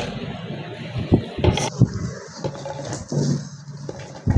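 Chopped vegetables such as tomato and green chillies being dropped by hand into a grinder jar: a scatter of irregular soft knocks and thumps.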